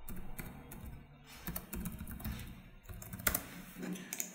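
Computer keyboard typing: irregular, scattered key presses, with one sharper, louder keystroke a little over three seconds in.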